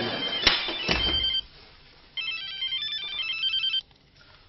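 Mobile phone ringtone for an incoming call: a rapid melody of short, high electronic notes, a brief burst about a second in, then after a short pause a longer run that stops just before the end. Two sharp knocks come in the first second.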